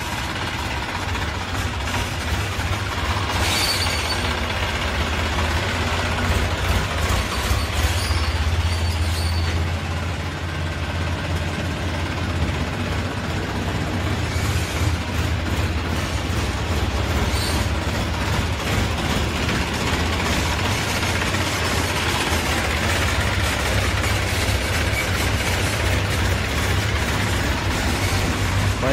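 Massey Ferguson 245 DI tractor's diesel engine running at low speed while the tractor is driven slowly, a steady low hum, with a few short clicks along the way.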